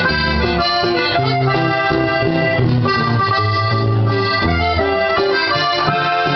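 Live instrumental passage on button accordion, the accordion carrying a melody of held notes over a steady bass line, with guitar accompaniment.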